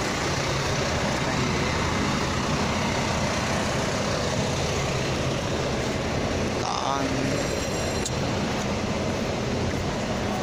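Diesel bus engines idling at a bus terminus: a loud, steady low hum with traffic noise. A brief voice is heard about seven seconds in.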